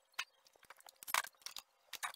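Scattered light knocks and wooden clatter of scrap wood boards being handled, with a louder knock about a second in.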